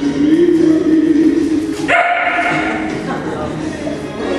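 A dog barking over a song playing in the background.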